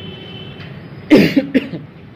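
A man coughs into a close headset microphone: one loud cough about a second in, then a shorter one half a second later.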